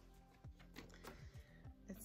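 Near silence with faint background music, and the light rustle of a paper card being handled.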